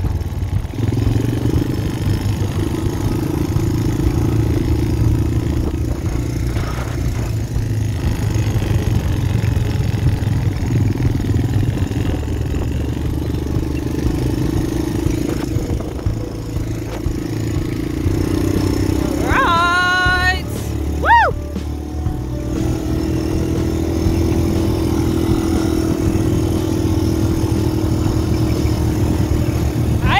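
Quad bike engine running steadily under a rider on sand. A short voice call rises and falls about two-thirds of the way through.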